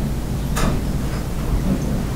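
Steady low background rumble with hiss, with one short click a little over half a second in.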